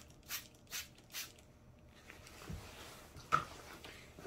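Gold trigger spray bottle spritzing water mist: three quick, faint hissing sprays in the first second and a half, then a single small click near the end.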